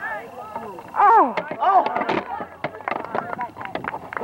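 Several voices shouting out on a lacrosse field during play, loudest about a second in. Through the second half there is a quick scatter of short sharp clacks.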